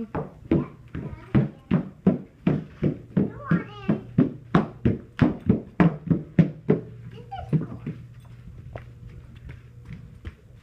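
Adult-sized shoes clacking on a hardwood floor as a toddler walks in them, about three steps a second, with a brief child's vocal sound midway. The clacking stops about seven seconds in.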